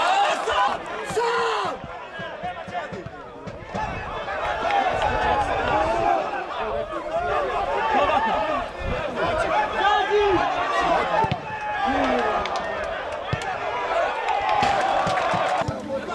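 Players and spectators shouting and calling out during a football match, many voices overlapping, with occasional dull thuds of the ball being kicked.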